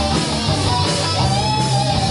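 Rock band playing live: electric guitars over bass and drums, with held guitar notes bending in pitch.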